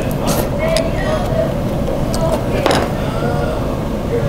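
Restaurant room noise: a steady low rumble with faint background voices. Short slurping sounds come from a soup bowl just after the start and again near the three-second mark.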